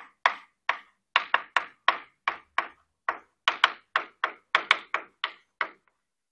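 Stick of chalk striking and writing on a blackboard as capital letters are written: a quick, uneven series of short sharp taps, about three or four a second.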